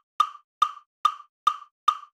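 Metronome-style count-in clicks: a steady series of short, sharp clicks, five of them at a little over two a second.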